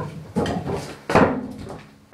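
A stunt kick scooter knocking and rattling against the floor as the rider hops and lands: three sharp knocks, the loudest about a second in, followed by a brief ring.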